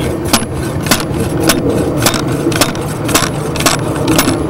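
Precision Cup Cutter's six-pound hammer flicked down repeatedly onto the rubber-washered top of its stainless steel blade, driving the blade into the putting green: a steady run of sharp knocks about twice a second, with fainter clicks between.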